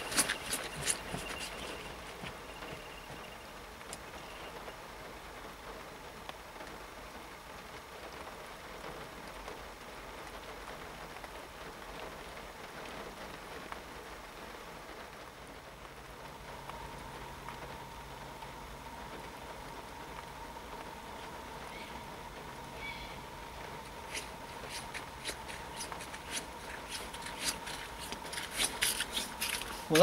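Quiet lakeside background while a hooked carp is played after a run. A faint, high, steady bite-alarm tone fades out in the first few seconds. A steady low hum comes in about halfway, and a spell of rapid clicking follows near the end.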